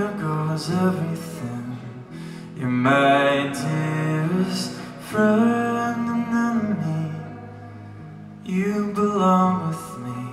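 Live music: a male voice singing three long phrases of held, wavering notes over a guitar accompaniment.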